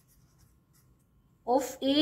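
Pen writing on paper: faint scratching strokes, cut into by a woman's voice about one and a half seconds in.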